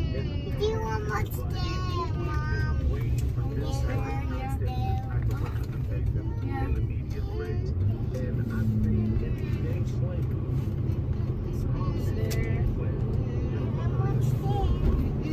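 Steady road and engine rumble inside a moving car's cabin, with high-pitched voices talking during the first few seconds and now and then after.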